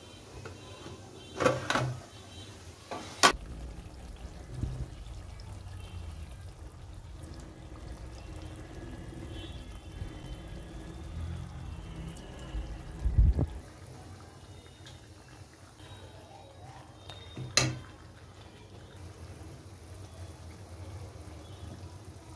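A steel ladle stirring thick, simmering meat gravy in a metal pan, with sharp metal clinks of the ladle and lid against the pan a few times and one heavier knock about halfway through.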